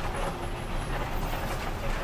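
Passenger bus engine and road noise heard from inside the cabin, a steady rumble.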